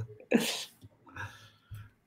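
A man's brief breathy laugh: one sharp burst of exhaled laughter about a third of a second in, then a few faint, softer chuckles and breaths.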